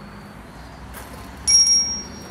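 A single sudden high-pitched ring, like a small bell or struck metal, about one and a half seconds in. It sounds for about half a second and then fades, over a faint steady low hum.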